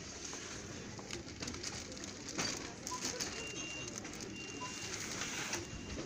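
Boxed hanging mirrors being handled and shifted on a store shelf: scattered clicks and scrapes of the packaging over a steady shop background noise. A faint thin high tone comes and goes in the second half.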